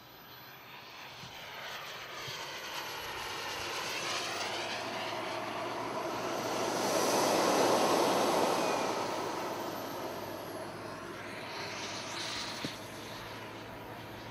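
Gas turbine of an RC scale Lockheed T-33 jet making a flyby. The sound swells to its loudest about eight seconds in and then fades as the plane moves off, with a high turbine whine that drops in pitch as it passes.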